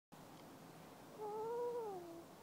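A toddler's single drawn-out vocal sound, about a second long, starting just past halfway; its pitch rises slightly, then falls away.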